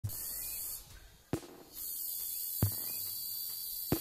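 Outdoor ambience: a steady high-pitched hiss that drops away briefly about a second in. Three sharp clicks come at roughly even intervals.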